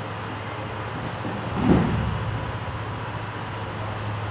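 One dull thud of a body landing on the tatami practice mats, a little before halfway, over a steady low hum.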